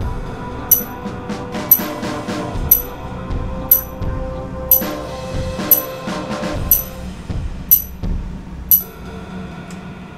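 OBS acoustic releaser giving a series of short, high-pitched beeps, one each second, nine of them, stopping about 9 s in. It is the releaser's 15-beep reply, which means "hello, I'm here": the unit is answering and working. Background music plays under the beeps.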